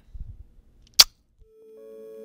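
Low handling rumble on a hand-held clip-on microphone, then a single sharp click about a second in. Soft music fades in near the end.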